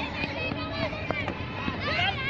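Several children's voices shouting and calling, overlapping.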